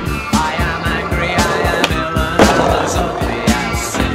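Skateboard rolling on paving, with sharp clacks of the board, the loudest a little over two seconds in, over rock music with a steady beat.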